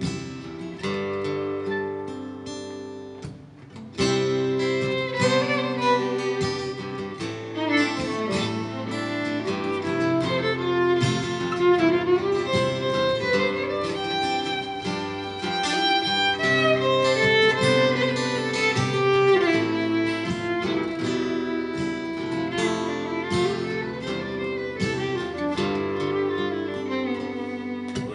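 Instrumental break played live on fiddle and strummed acoustic guitar, the fiddle bowed over the guitar's chords. The music drops quieter briefly about three seconds in, then picks up again.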